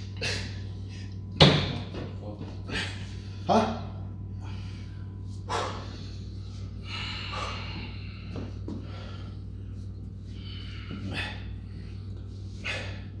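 Heavy metal dumbbells knocking as they are handled at a dumbbell rack, the loudest a single sharp knock about a second and a half in. Short vocal sounds come between the knocks, over a steady low hum.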